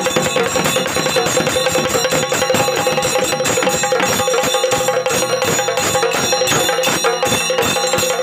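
Traditional ritual music: fast, dense metallic ringing percussion and drumbeats over a steady held note.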